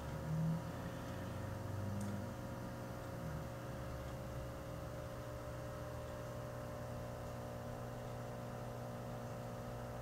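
Steady, low electrical hum made up of several fixed tones over a faint hiss, with a faint brief sound about half a second in.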